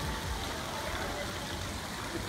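Steady running water from a small fountain jet splashing into an indoor garden pond, over the open background of a large airport terminal hall.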